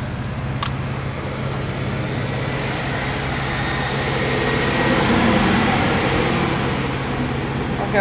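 Inside a car cabin: a steady low engine hum with road and air noise, swelling louder about halfway through. A single sharp click just over half a second in.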